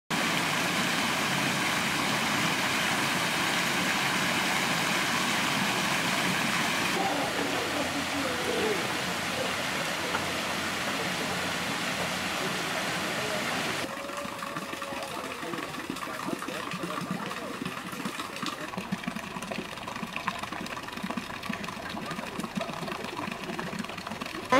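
Fountain water jets splashing steadily into a stone basin. About 14 seconds in the splashing becomes quieter, with people talking faintly in the background.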